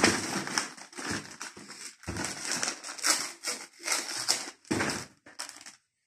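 Clear plastic bags and packing paper crinkling and rustling in irregular handfuls as small parts are unwrapped by hand from a cardboard box.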